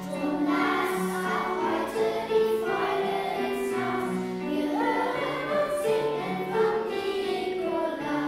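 A children's choir singing a strophic song in German, with steady low notes of accompaniment under the voices.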